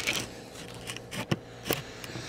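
Small clicks and taps from handling a Raspberry Pi and its add-on plate while a small mounting screw is fitted: a sharp click at the start, then a few lighter ones past the middle.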